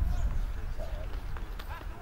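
Faint voices talking over a steady low rumble.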